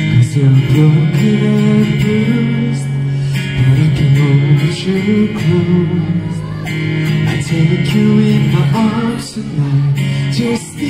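Two acoustic guitars played together, strummed and picked, with a man singing a slow melody over them.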